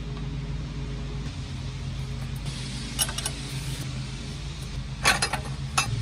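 A few light metallic clicks and clinks, about halfway through and again near the end, as a rusty steel bracket is handled and marked for drilling, over a steady low background hum.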